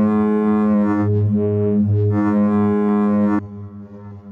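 Eurorack modular synth voice, an Expert Sleepers Disting mk4 running as a wavetable oscillator, playing sustained notes rich in harmonics over a low bass tone. The brightness swells and fades a few times. About three and a half seconds in the sound drops sharply, leaving a quieter tone.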